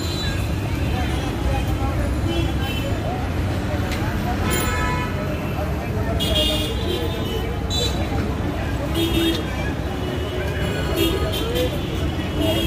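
Busy road traffic with a steady rumble and vehicle horns tooting several times, short blasts scattered through, over people talking in the crowd.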